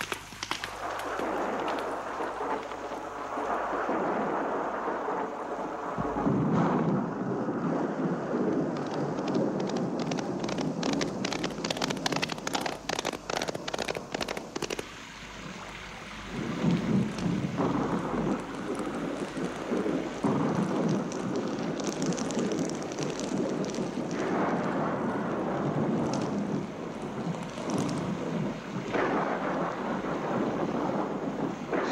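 Thunderstorm: heavy rain falling, with thunder rolling and swelling several times.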